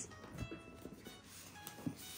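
Quiet background music with thin held notes, and two soft knocks from the box being handled, one about half a second in and one near the end.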